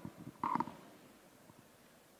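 Near silence: hall room tone with one short, faint sound about half a second in.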